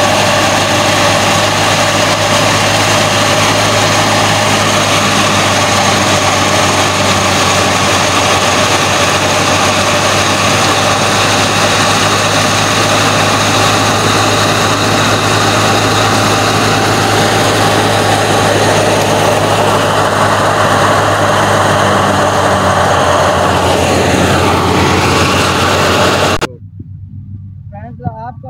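Tractor-driven wheat thresher running at threshing speed: a loud, steady machine drone with a constant hum, as threshed grain pours from its chute. It cuts off suddenly near the end.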